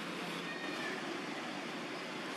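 A macaque's thin, high call, a short gliding squeal about half a second in, over steady background hiss.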